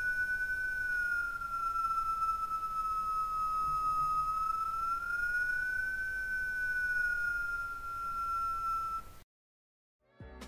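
The second whistling component of a turbo's sound, isolated on its own: one high whistle that falls slowly in pitch, rises again just past the middle and eases down, then cuts off suddenly near the end. It is one of the two whine components that make the turbo sound unacceptable.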